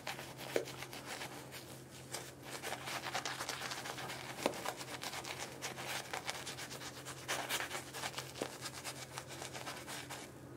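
Synthetic-bristle shaving brush lathering shaving cream on the face: a quick, irregular run of wet, scratchy brush strokes over the skin.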